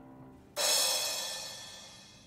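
A bright cymbal-like shimmering crash sound effect strikes about half a second in and rings out, fading over about a second and a half, after the last of soft background music fades.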